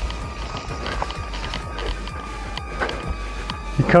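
Footsteps walking down a dirt trail, heard under steady background music.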